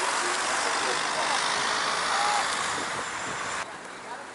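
Road traffic: a car driving past on asphalt, its tyre and road noise a steady hiss that cuts off abruptly near the end.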